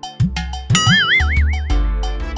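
A comic sound effect over background music: two or three quick low rising glides, then a high warbling tone that wobbles up and down in pitch for about a second before the music's beat comes back.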